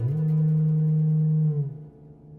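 Ondes Martenot sliding up into a low held note. The note holds steady, then dips slightly in pitch and fades out near the end.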